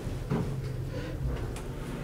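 Low, steady hum of a ThyssenKrupp / US hydraulic elevator's pump motor, heard from inside the cab.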